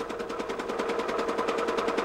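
Small engine of an irrigation pump running steadily, a fast even knocking of more than ten beats a second over a steady hum.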